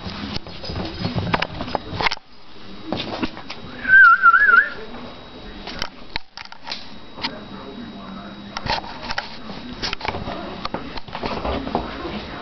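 Handheld camera handling: knocks and rustles throughout, with a short warbling whistle about four seconds in, the loudest sound.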